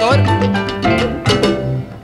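Instrumental passage of a 1968 salsa band recording: bass guitar line, piano and horns over Latin percussion, with no singing.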